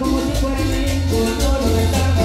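A chanchona band playing Latin dance music live: violin, congas and timbales over a deep, moving bass line and a steady percussion beat.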